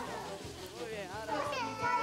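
Children's voices in the background, chattering and calling, quieter than the narration around them.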